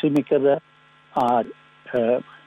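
A man's voice speaking in short, broken phrases with pauses between them, over a steady low electrical hum.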